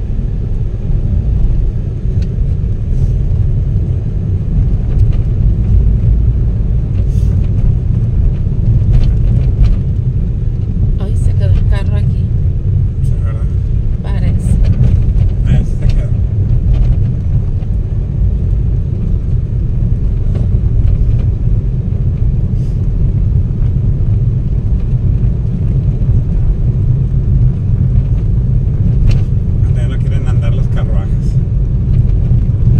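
Steady low rumble of a car driving at low speed, heard from inside its cabin: engine and tyre noise on a paved street.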